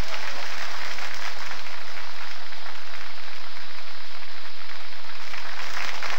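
Audience applauding, many hands clapping at once in a dense, steady patter.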